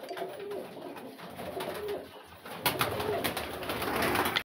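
Domestic pigeons cooing in a small loft, and from about two and a half seconds in, a run of wing flaps as several birds take off and fly about the room.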